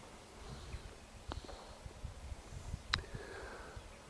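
Quiet open-air ambience with a low, uneven rumble and two brief sharp clicks, one just over a second in and one near three seconds.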